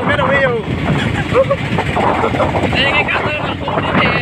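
Engine and road noise of a small open auto truck in motion, a steady din under men's voices and laughter.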